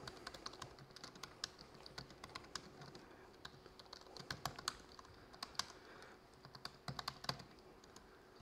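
Typing on a MacBook laptop keyboard: faint, irregular keystrokes in quick runs with short pauses between.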